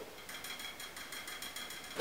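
A pet drinking water close by, lapping in a faint, quick, regular ticking rhythm.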